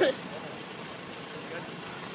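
A vehicle engine idling steadily under a roadside background, with a short falling call from a person's voice right at the start.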